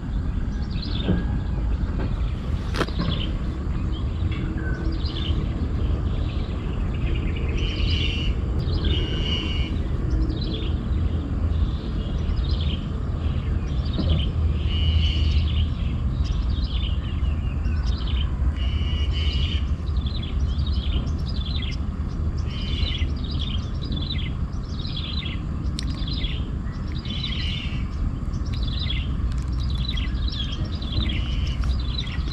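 A bird calling over and over: short falling chirps, about one or two a second, starting a few seconds in. Under it a steady low rumble.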